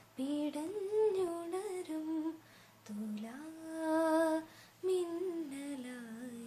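A woman singing a Malayalam film song solo with no accompaniment, in slow phrases of long held notes, with one long note near the middle swelling louder and then fading.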